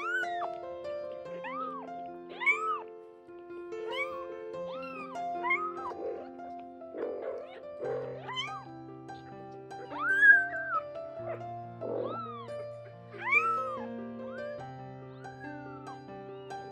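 Young kittens, about two weeks old, mewing over and over: short high calls that rise and fall, roughly one a second, the loudest about ten and thirteen seconds in. Background music plays throughout.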